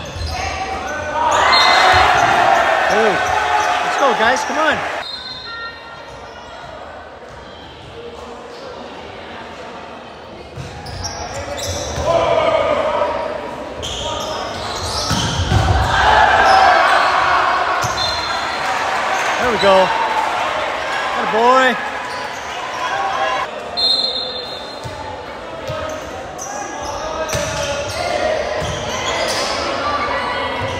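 Volleyball rallies echoing in a large gymnasium: the ball being struck and bouncing, short squeaks of sneakers on the hardwood floor, and players and spectators shouting and cheering. The shouting comes in two loud bursts, about a second in and again from about twelve to twenty-three seconds.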